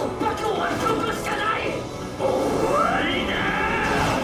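Anime character dialogue over a background music score, getting louder about two seconds in.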